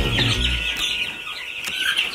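A brood of young chicks peeping all at once, many short high chirps overlapping into a steady chatter.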